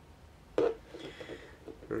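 A single short knock about half a second in, as small lock parts are handled over the pin tray on the table.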